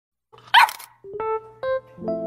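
A puppy gives one short, high bark about half a second in. A few single piano notes follow in the second half.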